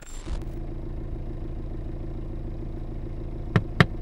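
Car engine running steadily, heard as a low even hum from inside the cabin, with two quick sharp clicks close together near the end.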